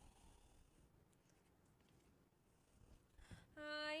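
Near silence with faint rustling and light handling clicks as a card is taken out of a box.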